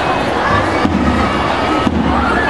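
School drum and lyre marching band playing: dense, continuous drumming with bell-lyre notes ringing through it.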